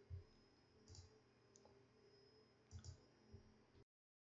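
A few faint computer mouse clicks over near silence: one about a second in, another shortly after, and a quick double click near the end. The sound then cuts out to total silence.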